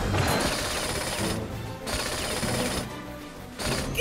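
Cartoon power-tool sound effect of a bolt being driven down: three noisy bursts, each about a second long, with short breaks between them, over background music.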